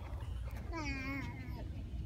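A small child's drawn-out, wavering vocal sound, like a whine or cat-like call, lasting under a second near the middle, over a low steady hum.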